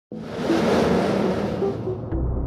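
Logo-intro sound effect: a whooshing swell that starts abruptly, with a few short low notes held beneath it, its high hiss thinning out near the end.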